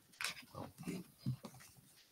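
Faint, indistinct murmuring voices picked up off-microphone in a meeting room, in short broken fragments.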